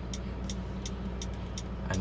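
Turn-signal ticker of a 2020 Mitsubishi Triton clicking in a steady rhythm, about three ticks a second, with the indicators flashing, over a steady low hum.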